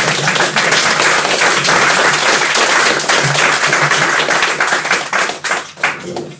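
Audience applauding: dense, loud clapping from many hands that thins out near the end.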